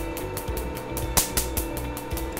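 Q-switched Nd:YAG laser handpiece firing a rapid, even train of sharp snaps, about seven a second, each pop the laser energy hitting the melanin in pigmented spots on the skin. A steady hum runs underneath.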